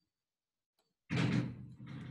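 Dead silence for about a second, then a sudden loud bump as a microphone's audio cuts in, followed by room noise and a steady low electrical hum.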